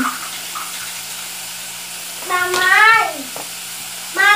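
A young child calls out "Mamãe!" once, a loud high-pitched call about two and a half seconds in, over the faint steady sizzle of carne seca and vegetables sautéing in a pot.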